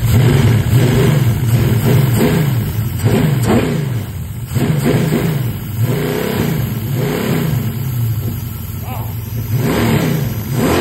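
Chevy V8 on an engine run stand, revved repeatedly by hand at the throttle linkage of its throttle-body fuel injection. The pitch rises and falls with each of several blips.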